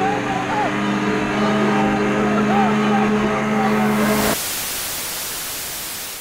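A steady droning hum with voices cuts off abruptly about four seconds in. It is replaced by a hiss of TV-style static noise that begins to fade away.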